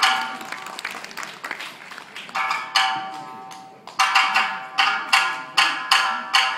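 Tsugaru shamisen struck with its plectrum: sharp, ringing notes that die away, a few widely spaced at first, then from about four seconds in a steady beat of about two strikes a second as the piece gets under way.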